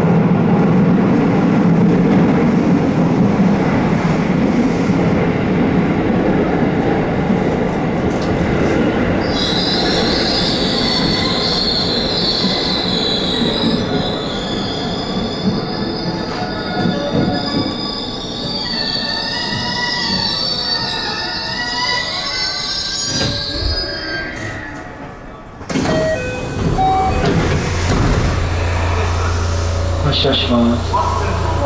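JR 207 series electric train running through a tunnel, then braking into a station. High ringing tones set in about a third of the way in, and a whine falls in pitch as the train slows to a stop. Near the end comes a sudden burst of noise.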